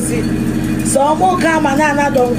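A person talking from about half a second in, over a steady low hum that runs underneath.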